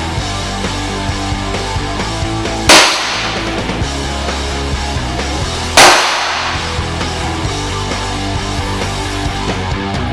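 Two heavy blows of a steel war hammer's drop-forged head against a steel breastplate, about three seconds apart, each a sudden impact that dies away within about half a second, over steady background rock music.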